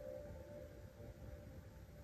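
Quiet room tone with a faint steady hum and a thin, held tone underneath.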